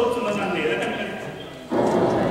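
A man's voice in a drawn-out, dramatic sung or declaimed line that trails off and fades. About 1.7 s in, a louder burst of dense sound cuts in suddenly.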